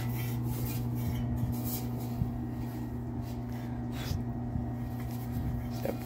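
Handling noise as a sandblasted 10-inch diesel exhaust tip is lifted out of a sandblast cabinet: soft rubbing and a few faint knocks. A steady low electrical hum runs underneath.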